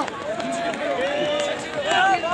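Outdoor crowd of men talking and calling out, several voices overlapping.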